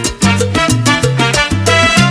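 Salsa music: an instrumental stretch of the band playing without singing, with a stepping bass line under the full ensemble.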